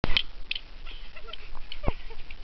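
Wooden drumsticks clacking against each other in a play sword fight: a few sharp clacks, two in quick succession right at the start, a lighter one about half a second in and another near the end.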